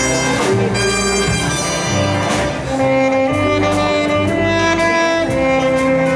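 Swing big band playing with a tenor saxophone featured out front, sustained notes from the sax and the band together.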